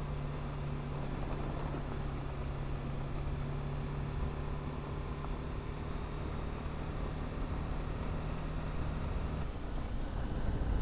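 BMW G 310 GS single-cylinder engine running at a steady pace in a low gear while riding on gravel, over a constant rush of wind and tyre noise. The engine note falls away near the end.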